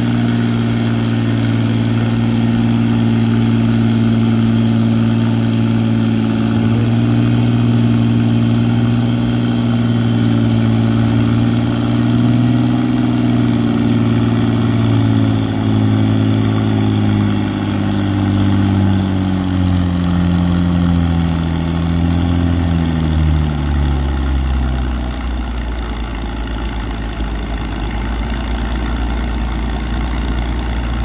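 Farmall 460 tractor engine pulling a weight-transfer sled at full throttle, loud and steady at first. From about midway its pitch falls over several seconds as the sled's load builds and the engine lugs down. For the last few seconds it runs at a low, steady speed as the pull ends.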